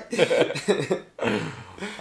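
Two men laughing in short bursts, breaking into coughs.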